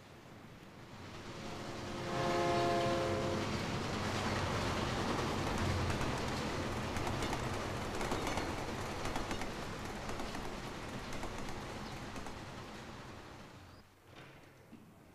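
A train going by. Its rumble builds over the first two seconds, then the horn sounds one steady chord for about a second and a half. The loud rolling rumble and wheel clatter run on after it and slowly fade near the end.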